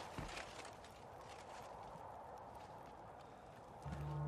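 Quiet film soundtrack ambience: a few sharp knocks in the first half-second, then a low, steady hiss. A sustained music chord comes in just at the end.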